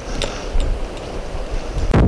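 Wind buffeting the microphone of a camera carried along a trail: a steady rushing rumble, strongest in the low end, with a few faint taps.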